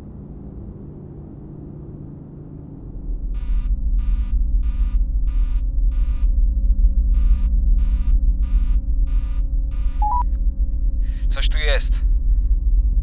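Science-fiction sound design. A low electronic drone swells in about three seconds in, and an alarm beeps over it in two runs of five or six beeps, about three beeps every two seconds. Near the end come a short tone and a brief warbling, sweeping squeal.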